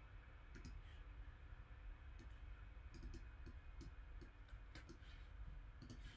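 Faint, scattered clicks of a computer mouse, about ten in all, some coming in quick pairs.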